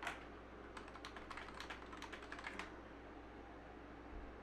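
Faint typing on a computer keyboard: one click at the start, then a quick run of key taps lasting about two seconds.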